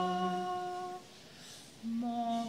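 A slow hymn sung in long held notes. One phrase ends about halfway through, and after a short pause the next note begins near the end.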